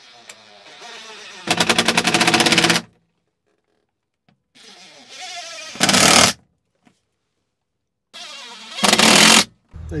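DeWalt Atomic cordless impact driver driving screws three times. Each time the motor spins up with a rising whine, then breaks into a rapid hammering rattle as the impact mechanism engages on the tightening screw.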